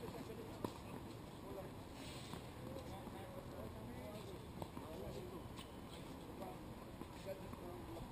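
Faint distant voices across outdoor tennis courts, with a few scattered sharp knocks of tennis balls being hit or bounced. The clearest knock comes just over half a second in.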